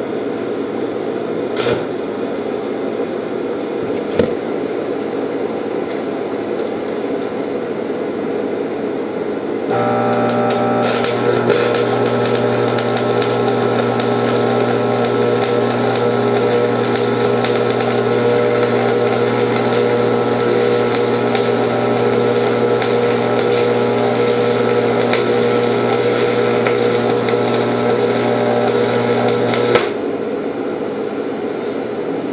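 Stick (arc) welder: a steady hum with a couple of sharp taps, then about ten seconds in the arc strikes and burns for about twenty seconds as a loud steady crackling hiss over the welder's electrical hum, cutting off at the end. The welder thinks the amperage was set too high.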